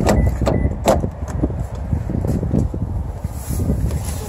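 A car door being opened as someone gets into the car: a few sharp clicks and knocks in the first second and a half, over a low rumble of phone handling and wind noise.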